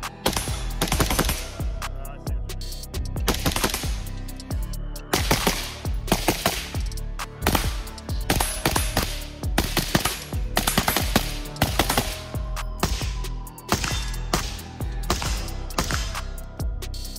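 Suppressed AR-15 rifle (Stag Arms SPCTRM in .223 Wylde) firing quick strings of shots, one string after another, over background music.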